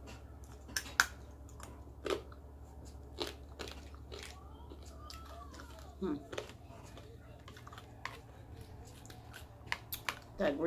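Close-miked chewing and crunching of fried food, with sharp crisp crunches every second or so.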